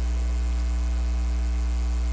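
Steady electrical mains hum in the recording: a constant low buzz with fainter higher overtones, unchanging throughout.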